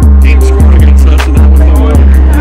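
Background music: a beat with heavy deep bass notes that drop in pitch as they hit, and fast, evenly spaced hi-hat ticks over them.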